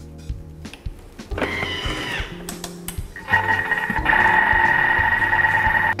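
Background music plays throughout. About three seconds in, a Thermomix TM6 starts mixing the béchamel sauce on speed 4, with a steady motor whir and a high whine.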